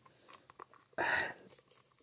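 Faint small clicks and rubbing from a Dollfie Dream doll's vinyl leg being pushed into its hip joint, with one short hiss-like burst about a second in.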